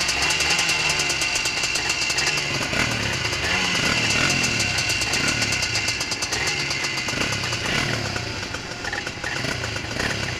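Two-stroke Honda ATC three-wheeler engines idling close by, the engine note rising and falling a little now and then.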